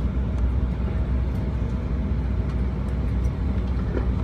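Airliner cabin noise while taxiing after landing: a steady low rumble of the jet engines at idle and the wheels rolling on the taxiway.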